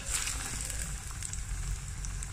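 A breaded kebab frying in hot oil in a pan. The oil starts to sizzle and crackle suddenly as the kebab goes in, then keeps on sizzling steadily.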